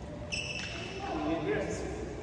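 A short, high-pitched squeak of rubber shoe soles on the indoor sports court floor about a third of a second in, followed by people's voices talking in the hall.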